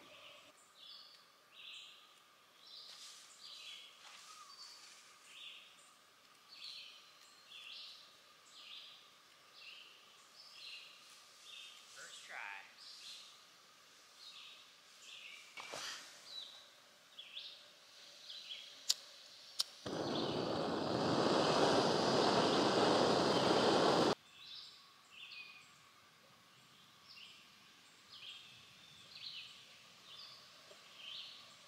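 Small canister backpacking stove: two sharp clicks, then the burner hissing steadily for about four seconds before it cuts off suddenly. Short bird chirps repeat throughout.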